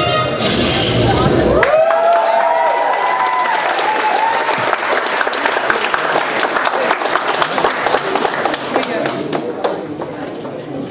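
Recorded dance music with a heavy bass beat cuts off about two seconds in, and the audience cheers with a few whoops and applauds steadily through the rest, easing slightly near the end.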